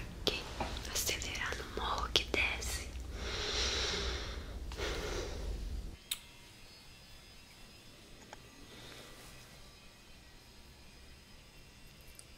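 Close whispering mixed with sharp taps and clicks of handled objects at an ASMR binaural microphone. About six seconds in it cuts off abruptly to faint room tone with a few small ticks.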